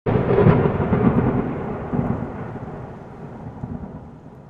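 A low, thunder-like rumble added to an animated channel intro. It starts abruptly at full loudness, swells again about two seconds in, and then slowly dies away.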